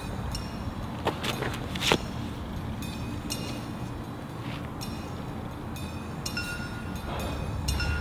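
Steady low outdoor rumble, with a couple of sharp clicks about one and two seconds in.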